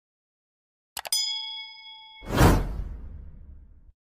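Sound effects for an animated subscribe button. Two quick clicks about a second in are followed by a bell-like ding that rings steadily for about a second, then a loud whoosh with a deep rumble that fades away.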